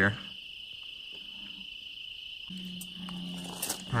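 Crickets trilling in one steady, unbroken high note. A low steady hum joins in for the last second and a half.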